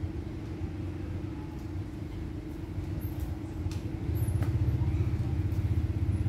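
Steady low rumble with a droning hum, growing louder about four seconds in, with a few faint clicks.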